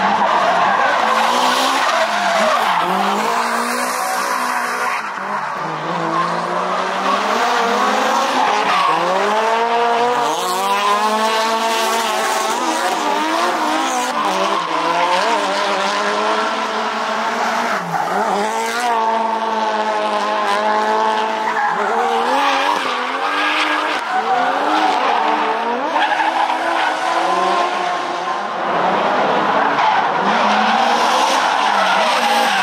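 Drift cars sliding through a corner one after another. Each engine's note climbs and drops repeatedly as the throttle is worked, over continuous tyre screeching.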